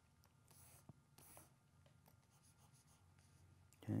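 Faint scratching of a pen stylus on a Wacom Intuos Pro graphics tablet: two short strokes, about half a second and a second in, with a light tap between them.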